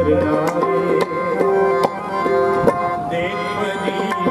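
Harmoniums and tabla playing kirtan music together. The harmonium reeds hold sustained melody notes while the tabla keeps a steady stroked rhythm.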